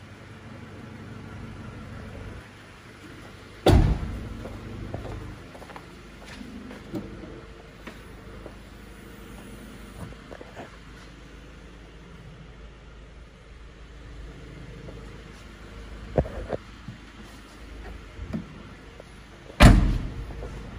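Doors of a 1998 Honda StepWgn minivan being shut. A loud slam comes a few seconds in and a few lighter knocks follow later. A second loud slam near the end is the rear tailgate closing.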